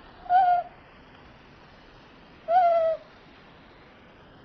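A small ear-tufted owl giving two short, clear hoots about two seconds apart, each falling slightly in pitch, the second a little longer than the first.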